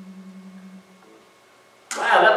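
The last note of an electric bass guitar rings through a small amplifier with a slight wavering and stops under a second in. A voice starts just before the end.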